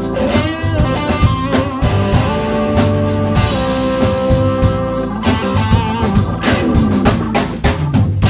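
A live band plays an instrumental passage on drum kit, electric guitar and a Roland V-Combo keyboard. Steady drum hits run under held keyboard chords and wavering guitar notes.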